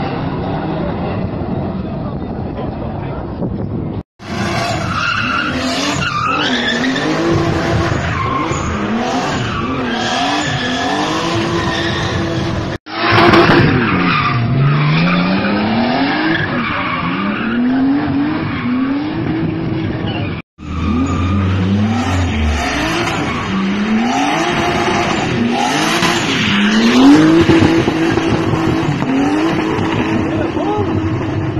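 Car engine revving hard again and again, its pitch climbing and falling every second or two, with tyres skidding and squealing as the car spins donuts and burnouts. The sound cuts off abruptly three times.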